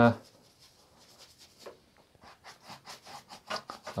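Soft synthetic brush working oil paint, a run of faint scratchy rubbing strokes that come quicker and a little louder toward the end.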